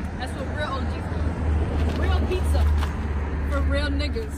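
A steady low rumble with short snatches of voices near the start and again near the end.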